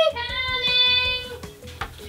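A woman singing one long held note that fades out about one and a half seconds in.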